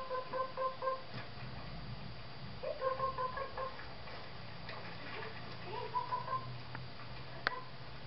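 Duck quacks played through a television speaker: three runs of rapid, evenly spaced quacks at about five a second, then a single sharp click near the end.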